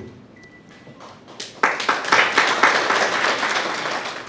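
Audience applauding: after a brief near-quiet pause the clapping sets in about a second and a half in and carries on steadily, easing off near the end.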